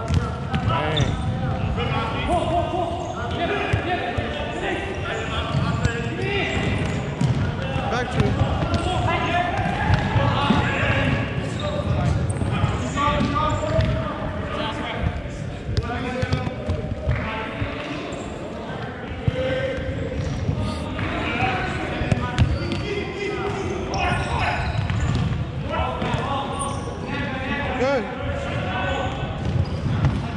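Indoor futsal being played on a wooden sports-hall floor: repeated ball kicks and bounces against the boards, with players calling out indistinctly in the reverberant hall.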